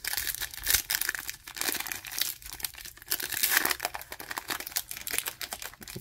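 Clear plastic wrapper of a trading-card pack crinkling and tearing as it is pulled off the stack of cards by hand, a dense, irregular crackle.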